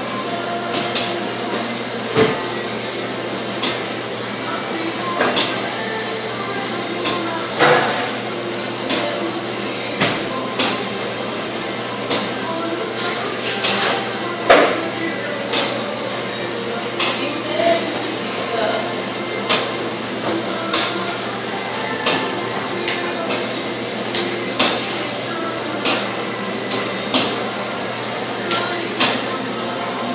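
Metal fish-bone tweezers pulling pin bones from a raw salmon fillet, giving sharp short clinks roughly once a second, each bone pulled in turn.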